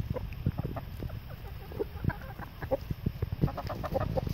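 Several chickens clucking, short calls following one another in quick succession, over a low rumble.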